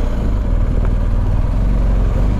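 Motorcycle engine running steadily at low road speed, a low, even rumble as the bike rolls slowly along.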